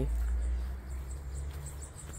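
Outdoor garden ambience: a low rumble on the microphone, loudest in the first second, under faint high-pitched insect chirping that repeats a few times a second.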